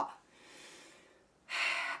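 A woman breathing in a pause between sentences: a faint out-breath, then a quick, sharp in-breath in the last half second before she speaks again.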